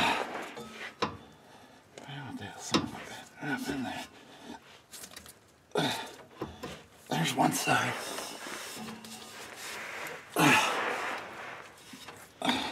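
A man's low, wordless mutters and effortful breaths, with a few sharp metal clicks, as a driveshaft U-joint is worked by hand into a Ford 8-inch differential's pinion yoke.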